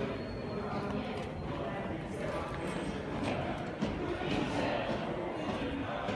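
Footsteps going down hard stairs, with indistinct voices in the background.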